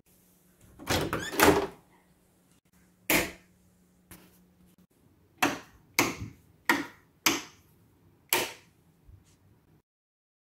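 An interior door's lever handle turned and the latch and door worked about a second in, followed by a single click. Then five sharp clicks a little over half a second apart as rocker light switches on a multi-gang wall plate are flipped.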